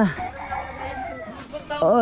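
A rooster crowing in the background, between a man's long, drawn-out calls at the start and near the end.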